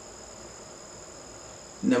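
A steady, high-pitched insect drone, two tones held without a break, over faint room noise. A man's voice starts near the end.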